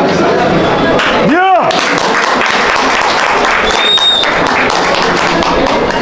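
An audience applauding, starting about a second in, with a short rising-and-falling voice whoop near the start of the applause and a brief high whistle about four seconds in.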